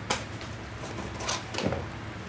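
Used football boots being handled and lifted off a tiled floor: a sharp click just after the start, then soft knocks and rubbing of the shoes.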